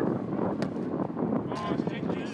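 Wind rumbling on the microphone, with a sharp thud of a football being struck about half a second in, and a short wavering shout from a player near the end.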